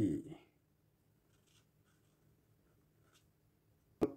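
Faint scratching of a felt-tip marker on paper as a number is coloured in, in short light strokes.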